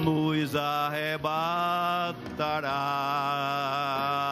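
A man singing a hymn solo into a microphone, holding long notes with vibrato, in two phrases with a short break about two seconds in.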